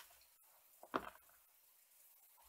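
Two six-sided dice rolled into a padded dice tray, landing with one brief, soft clatter about a second in.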